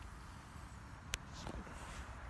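A man drawing on a Savinelli tobacco pipe: faint puffing, with one sharp click about a second in, over a low steady rumble.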